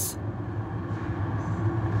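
Steady low mechanical rumble and hum of machinery running, a sound-effect ambience of mill machinery.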